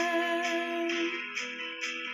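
A woman's voice holding a long sung note that ends a little past a second in, over instrumental accompaniment with plucked guitar keeping a steady beat, which carries on alone afterwards.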